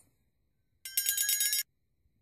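A short, high-pitched trilling ring, like a telephone bell, pulsing about ten times a second for under a second near the middle.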